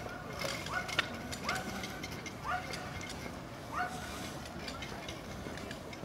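A bird repeating a short call that rises and then holds one pitch, about once a second, with steady outdoor background noise.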